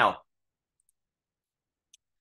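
Near silence, broken by one faint computer mouse click near the end.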